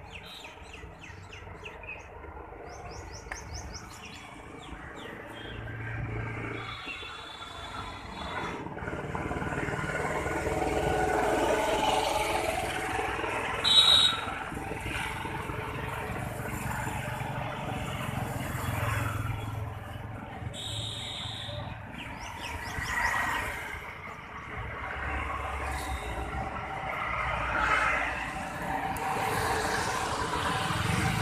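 Street ambience under trees: birds chirping in the first few seconds, then road vehicles passing, their rumble swelling and fading several times. Two short high-pitched sounds stand out, the louder about fourteen seconds in.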